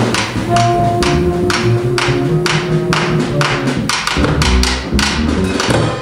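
Live free-improvised jazz for drums, cello, double bass and saxophones. Drum strikes with a tapping, wood-block-like sound come about twice a second over low string bass notes, with a held note in the first half.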